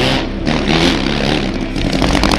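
Drag racing motorcycle engine revving at the start line, its pitch rising and falling with a loud surge about half a second in.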